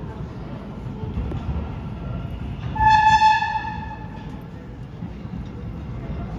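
Kawasaki R188 subway train approaching the station with a low rumble, sounding its horn once, a single blast of about a second, roughly three seconds in.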